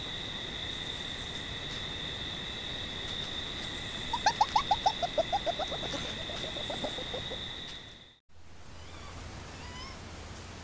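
Gray fox calling in play: about four seconds in, a run of about fifteen short yips that fall in pitch and grow weaker over some three seconds. A steady chorus of night insects drones underneath until the sound cuts off about eight seconds in.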